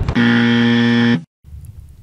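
Electronic buzzer sound effect in the show's logo sting: one loud, steady buzz of about a second that cuts off sharply, followed by faint low hum.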